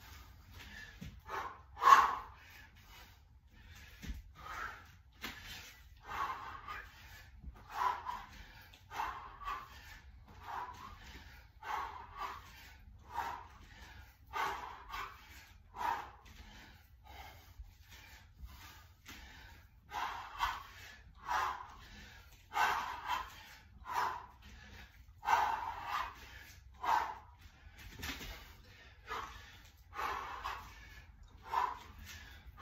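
A man's hard, forceful breathing under exertion: short exhalations, about one a second and sometimes in quick pairs, paced with repeated kettlebell half-snatch reps.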